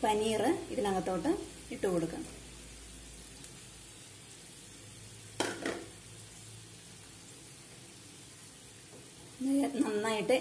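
Masala gravy sizzling gently in a frying pan, with a brief splash and clatter about halfway through as paneer cubes are tipped in.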